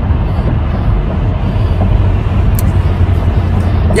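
Steady low road and engine rumble of a car driving at highway speed, heard from inside the cabin, with one brief faint click about halfway through.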